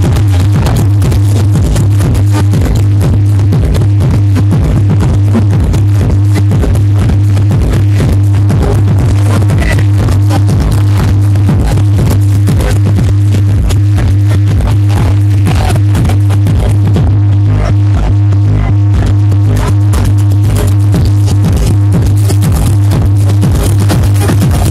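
Loud electronic dance music with a heavy, steady bass line, played over a DJ loudspeaker.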